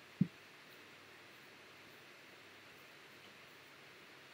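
A single short mouse click just after the start, then only a faint steady hiss of room tone.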